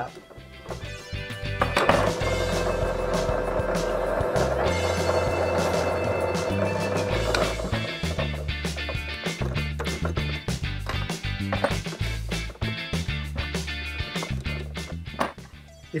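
A drill press motor runs steadily for about five seconds while a 4 mm bit drills a hole, starting about two seconds in. Light clicks and knocks follow over background music.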